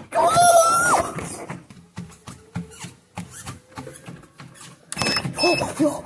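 A held, steady squeal in the first second, then treadmill knocks and thumps coming irregularly, and two short electronic beeps from the treadmill's control panel about five seconds in.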